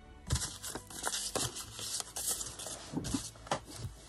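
Paper being handled on a cutting mat: irregular rustling and light taps as paper scraps are moved and an envelope is laid down.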